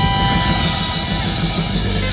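Acoustic jazz quartet playing live: alto saxophone and trumpet hold a long note over a drum kit's cymbals and upright bass. The held note breaks off near the end.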